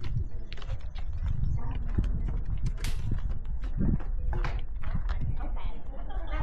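Handling noise from a body-worn action camera while its wearer walks: a steady low rumble with scattered rubbing clicks and knocks.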